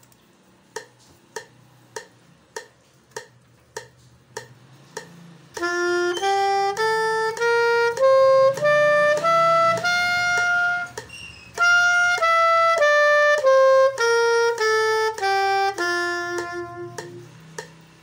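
A metronome ticking steadily, about 100 beats a minute, then a soprano saxophone comes in after about five seconds. It plays a one-octave scale up, holds the top note, then plays it back down, one note per click.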